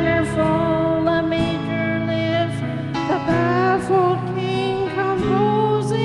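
A woman singing a slow ballad into a microphone over a karaoke backing track of held chords, drawing out long notes that bend slightly in pitch.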